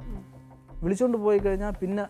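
A man's voice speaking, a short emphatic phrase about a second in, over a faint steady music bed.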